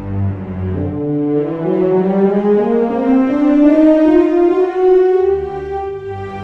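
Sampled orchestral ensemble from Spitfire's Abbey Road ONE played on a keyboard: a slow legato melody climbs step by step with sustained notes. Low strings hold a bass note that drops out about a second in and comes back near the end.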